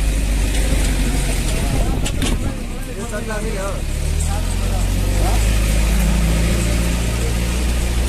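Vehicle engine running under load as it climbs a rough dirt road, heard from the open back with a heavy low rumble and wind and road noise. The engine note rises a little about halfway through, and a couple of knocks from jolts come about two seconds in.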